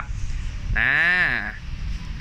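Speech only: a man drags out one syllable, "naaa", with a pitch that rises and falls, about a second in.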